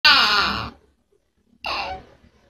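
A toddler girl crying: a loud wail that falls in pitch and breaks off, a short silence, then a second cry starting near the end.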